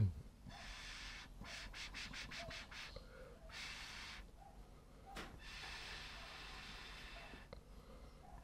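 Four faint puffs of breath blown through a plastic drinking straw onto wet acrylic paint, each lasting about a second or two, with short gaps between them.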